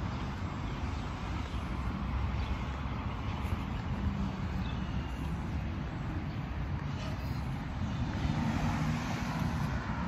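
Steady low rumble of wind buffeting a phone's microphone while moving outdoors, with road traffic noise that swells slightly near the end.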